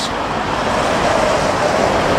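Road traffic: a motor vehicle passing on the street, a steady rush of engine and tyre noise that grows slowly louder.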